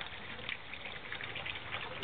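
Watery elephant-dung paper pulp pouring from a metal pail into a paper-making mould in a vat of water, a steady gushing splash.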